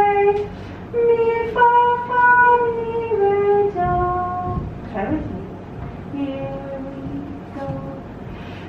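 A woman singing a melody unaccompanied in solfège syllables (so, re, mi, do), with held notes stepping up and down.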